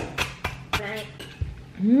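A metal spoon clicking and scraping against a bowl a few times as food is scooped out, followed near the end by a long, approving "mmm" at the taste.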